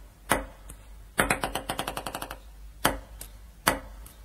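Table tennis ball sharply striking a paddle or table a few single times, about a second apart. In the middle comes a quick run of a dozen or so bounces that fade out, like a ping-pong ball bouncing to rest.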